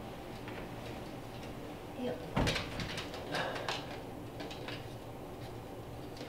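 A low thump about two and a half seconds in as a man steps up onto a wooden chair while carrying a person, then a few soft knocks and clicks of handling against the wall.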